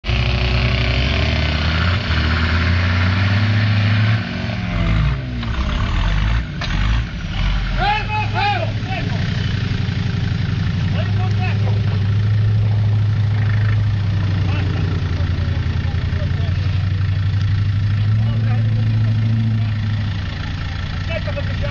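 Off-road 4x4's engine running hard under load as it climbs a steep mud gully, loudest in the first few seconds, then its pitch sweeps down and it keeps running steadily. Spectators shout about eight seconds in and again later.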